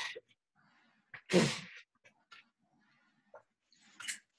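One short, breathy burst from a person about a second and a half in, amid a few faint, short ticks.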